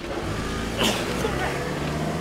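Land Rover Discovery SUV's engine running as it drives, a steady low hum. A brief sharp sound cuts in about a second in.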